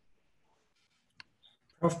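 Near silence in a pause between speakers, broken by a single short click a little past a second in; a man starts speaking just before the end.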